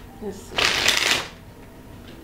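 A deck of tarot cards being shuffled: one short rush of riffling cards, starting about half a second in and lasting under a second.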